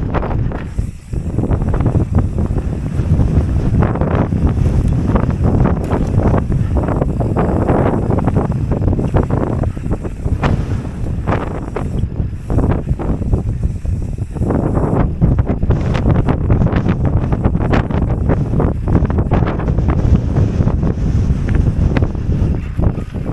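Wind buffeting the microphone of a camera on a mountain bike rider descending dry dirt singletrack, with a constant rumble of knobby tyres over rough ground and frequent short rattles and knocks from the bike. The rumble eases briefly about a second in.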